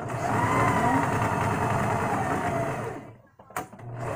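Electric sewing machine stitching at a steady speed for about three seconds, its motor whining at one pitch, then stopping; a sharp click follows shortly after.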